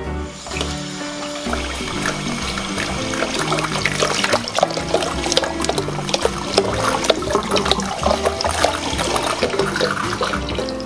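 Tap water pouring into a plastic basin in a sink, a steady splashing rush that grows louder over the first few seconds, over background music with slow bass notes.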